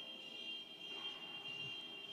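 Quiet pause with low room noise and a faint, steady high-pitched tone.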